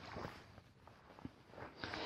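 Near quiet: faint background hiss with a single faint knock about a second in, from kayak paddles being handled and swapped.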